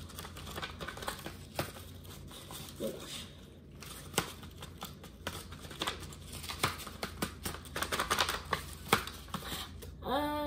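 Paper rustling and crinkling with many quick clicks and snaps as a folded-paper dragon puppet is worked open and shut by hand; the snaps come thicker and louder in the second half.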